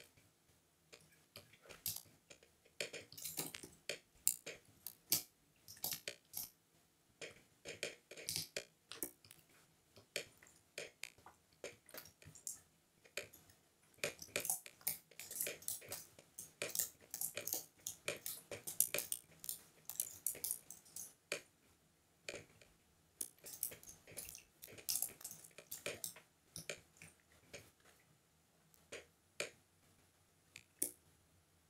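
Computer mouse clicking, faint and irregular, in quick flurries with short pauses between them.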